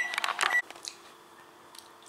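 A household appliance's electronic beep, a steady high tone that cuts off about half a second in, with a few sharp clicks over it, then faint room tone.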